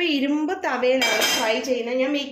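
A metal frying pan set down on a gas burner's grate, with a metallic clank about a second in, over a singing voice.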